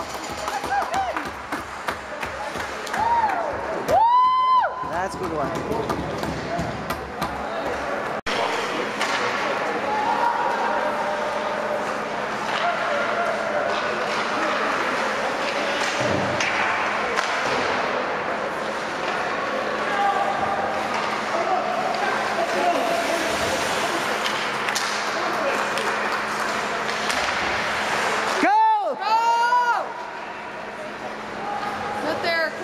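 Ice hockey game sounds in a rink: overlapping voices from the bench and spectators, with scattered knocks of sticks and puck. Two loud pitched calls stand out, one about four seconds in and one near the end.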